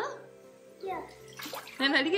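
Kitchen faucet running water into a steel bowl being rinsed in a stainless steel sink, under short high-pitched phrases from a child's voice and steady background music.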